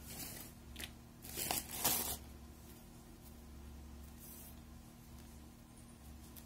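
Rustling and scraping of cotton yarn and the crocheted rug under the hands as a double crochet with a picot is worked with a crochet hook: a few short scratchy bursts in the first two seconds, a fainter one later, over a steady low hum.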